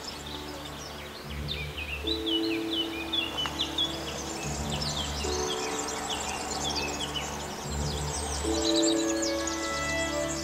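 Birdsong of quick chirps and trills over background music of slow, sustained chords that change every second or two.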